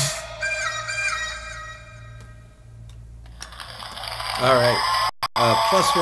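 End of an EDM track: the beat stops and the last synth notes ring on and fade out over about two to three seconds, over a low steady hum.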